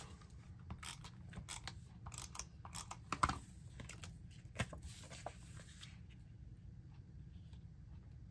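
Photos and paper being handled and pressed down on a scrapbook page: scattered soft rustles and light taps, thinning out after about six seconds.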